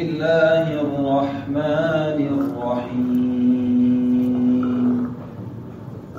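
A voice chanting a melodic devotional line (Sufi inshad), its pitch moving for the first few seconds and then holding one long steady note for about two seconds before it stops.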